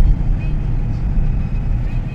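Car driving along a road, heard from inside the cabin: a steady low rumble of engine and tyres.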